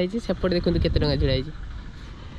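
A person talking until about one and a half seconds in, over a steady low background rumble that carries on after the talk stops.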